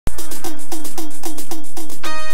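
Electronic drum pads struck with sticks, playing a steady beat of about four short, pitched percussive hits a second.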